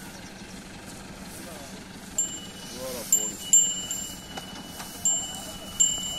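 Small bells ringing in irregular jingles from about two seconds in, each a clear high ring at the same pitch, as the ornamented bull moves.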